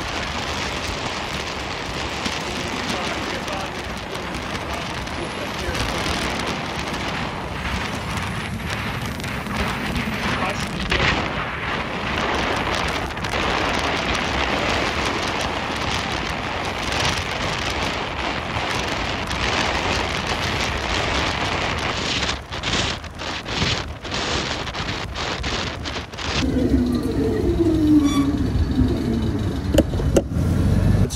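Wind noise buffeting the microphone of a bicycle on a fast downhill descent: a loud, steady rushing that flutters and dips a few times. Near the end the rushing drops away as the bike slows, and a motor vehicle is heard close by, its pitch falling.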